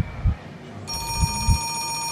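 A telephone starts ringing about a second in: a steady electronic ring of several tones held together, over heavy low bass thumps.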